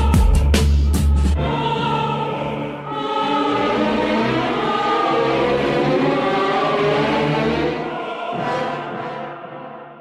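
Instrumental outro of a boom-bap hip-hop beat. The drums and heavy bass stop about a second and a half in, leaving a sustained choir-like vocal sample that fades out near the end.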